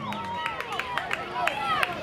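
Several high-pitched young voices shouting and calling out on a youth football field, with a few sharp clicks mixed in.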